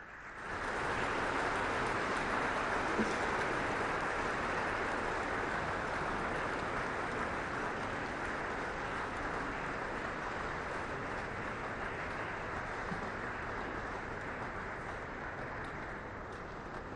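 Audience applauding, starting about half a second in and slowly tapering off.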